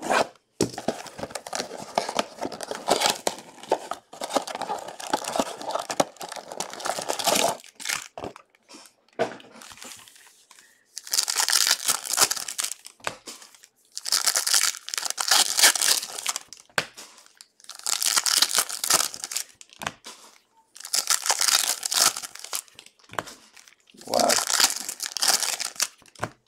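2020 Donruss Optic football card pack wrappers being torn open and crinkled by hand, in about six bouts of a few seconds each with short pauses between them.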